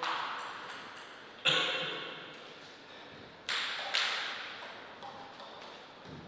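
Plastic table tennis ball bouncing and being tapped, a series of sharp clicks with a ringing tail, the loudest about one and a half seconds in and two more near three and a half and four seconds.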